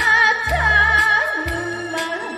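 A woman singing a Korean trot song live into a microphone, holding long notes with vibrato over instrumental accompaniment that has a low bass note about once a second.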